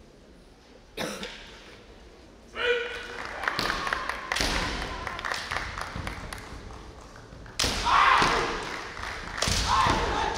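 Kendo fighters' kiai, loud shouted yells, some held on one pitch, with sharp knocks of bamboo shinai striking and feet stamping on the wooden floor. The first knock comes about a second in, and the yells come in several bursts after that.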